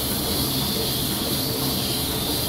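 Lely Astronaut robotic milking machine running while milking a cow: a steady hiss over a low hum.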